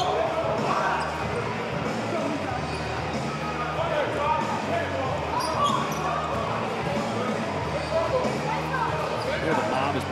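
Indistinct voices echoing in an arena during a break in play, with a ball bouncing on the court.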